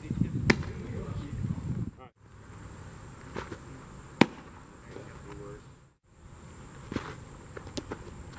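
Baseball pitches smacking into a catcher's mitt: a sharp pop about half a second in and a louder, crisper one about four seconds in, with a fainter knock near seven seconds. A low rumble fills the first two seconds.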